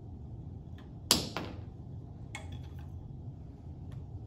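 A sharp, loud knock about a second in, a smaller knock right after, then a few lighter clicks, from a rotational-inertia demonstration rig as its rod with brass masses is set spinning by the torque wheel.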